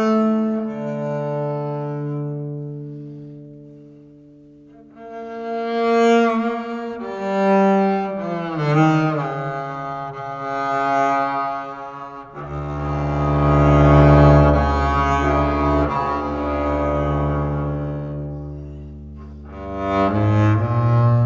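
Solo double bass played with the bow: long sustained notes. One note fades away about four seconds in, a string of shorter notes follows, and from about twelve seconds a deep low note sounds, the loudest of the passage.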